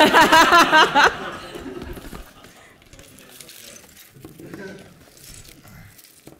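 A person laughing loudly for about a second, in quick pulses, followed by quiet room noise with faint voices.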